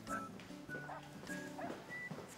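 Background music: a rising run of short high notes, about one every half second, over low held chords.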